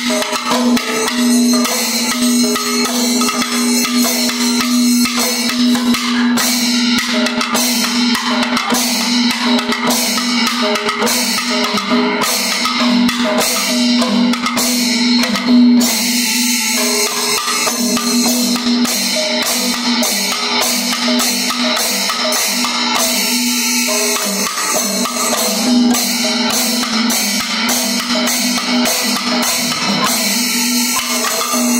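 Maddalam barrel drum played by hand in rapid, dense strokes during the maddalam section of a Panchavadyam temple ensemble. Sharp, evenly spaced metallic strokes about two a second keep time from about six seconds in.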